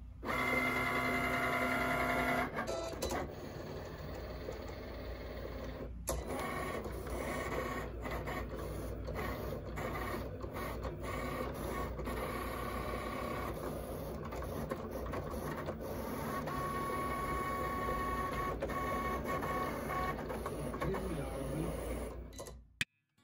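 Cricut cutting machine running a print-then-cut job, its motors whining and whirring as the blade carriage moves back and forth and the mat feeds in and out to cut around a printed design. The pitch keeps shifting with frequent short stops and starts, and the first two seconds or so have a loud, steady whine.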